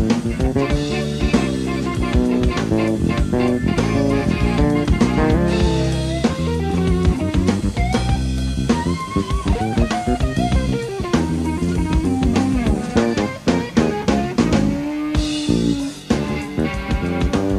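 Live jazz-funk trio playing: a semi-hollow electric guitar plays lead lines with bent notes over a busy drum kit and electric bass. A held, wavering guitar note sounds near the end.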